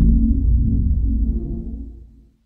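Low electronic synthesizer drone with slow gliding tones, fading away over the two seconds.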